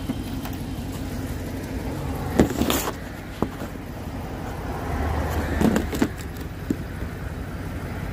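Handling noise from a hand-held phone as it is carried: scattered knocks and rustles, the loudest about two and a half seconds in. Under it runs the steady low hum of a vehicle engine running.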